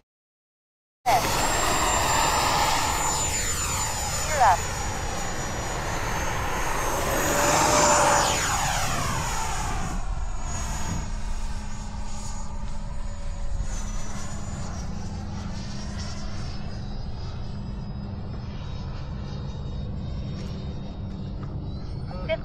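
Whine of the electric ducted fans on two Freewing F-22A 90mm Raptor model jets flying past, starting about a second in and loudest about eight seconds in as one makes a close pass. Wind noise on the microphone runs underneath.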